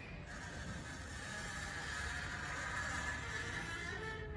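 Hydraulic cantilever umbrella lowering, its canopy folding down: a steady hiss that begins just after the start, swells a little and eases off near the end.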